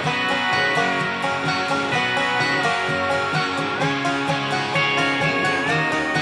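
Playback of a country-rock guitar bus on its own, strummed acoustic guitars and electric guitars with no drums, running dry through a bypassed drive plug-in as the unprocessed reference. A held high note rides over the strumming and steps up in pitch twice.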